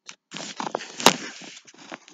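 Rustling handling noise, with one sharp click about a second in.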